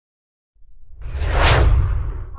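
A logo-reveal whoosh sound effect over a deep low rumble. It starts about half a second in and swells to a peak near the end.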